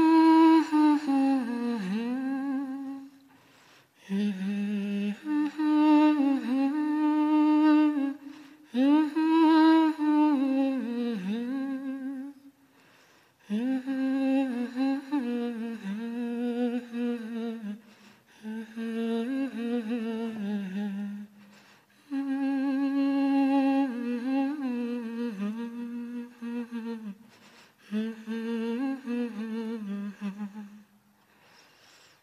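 A woman's voice humming a slow, wordless, wavering melody in phrases of three to five seconds with short pauses between them. The voice is unaccompanied.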